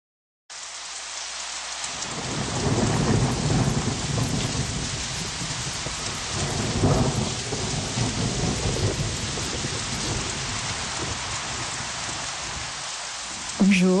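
Steady rain with rolling thunder, starting abruptly half a second in. The deep rumbles swell about two to four seconds in and again around seven seconds.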